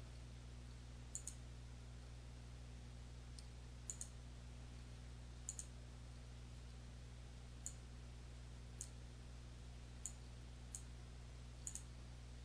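Faint, sharp computer mouse button clicks, single clicks and quick pairs every second or two, over a steady low electrical hum.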